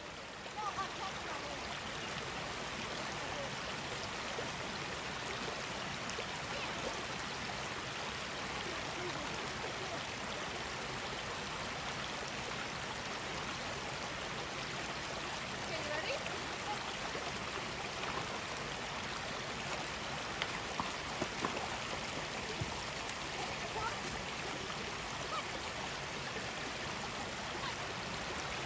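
Shallow creek running over rocks, a steady rush and trickle of water.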